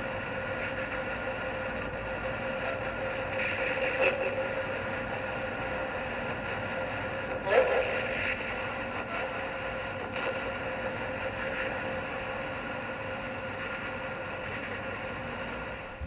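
Spirit box sweeping through radio frequencies, its small speaker playing a steady hiss and hum. Brief chopped fragments of sound break through about four seconds in and again at about seven and a half seconds.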